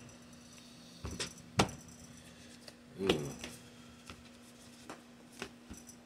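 Tarot cards being shuffled and handled, giving a few sharp clicks and snaps; the loudest come about a second and a second and a half in, with fainter ones later. A short, low vocal sound falling in pitch comes about three seconds in.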